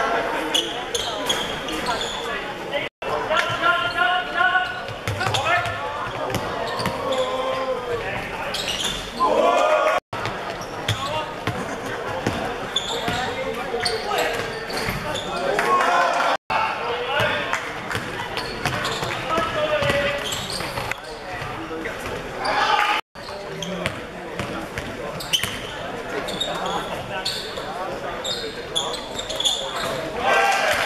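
Basketball being bounced and played on a hardwood court in a large echoing gym, under players' and onlookers' shouts and chatter. The sound is broken four times by brief silent gaps.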